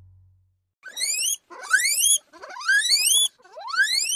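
A guinea pig wheeking: four loud squeals in quick succession, each rising in pitch and lasting about half a second.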